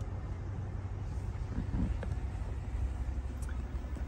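Steady low rumble inside the cabin of a GMC Yukon XL Denali with its engine running, with a few faint small clicks about halfway through.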